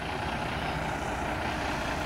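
Semi truck's diesel engine running steadily as the tractor-trailer pulls slowly past.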